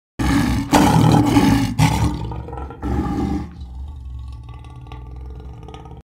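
Lion roar sound effect: four loud roaring blasts over the first three and a half seconds or so, then a fading tail that cuts off suddenly.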